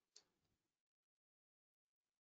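Near silence, with one very faint tick shortly after the start.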